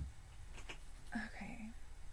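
A woman's brief soft murmur, a half-voiced sound about a second in, against quiet room tone.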